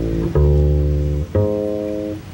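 Guitar and bass playing a slow ballad introduction with no voice: held chords over a deep bass note, a new chord struck about a third of a second in and another about halfway through.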